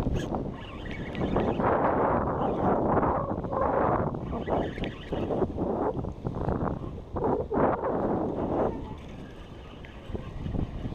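Wind buffeting the microphone over the sea, a rushing noise that swells and dips, quieter near the end.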